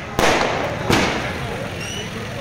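Fireworks going off: two sharp bangs about three-quarters of a second apart, then a short rising whistle near the end from a rocket climbing.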